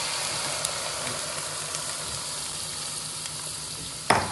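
Hot oil sizzling in a stainless steel pan of fried gram dal and dry red chillies as rice, sour curd and coconut batter is poured in; a steady hiss that slowly dies down.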